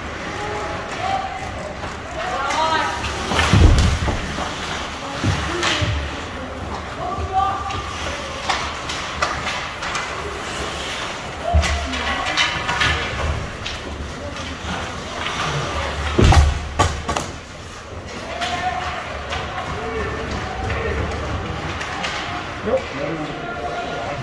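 Hockey spectators shouting and cheering in an ice rink, with loud thuds against the rink boards about four seconds in and again about sixteen seconds in, and lighter knocks of sticks and puck between.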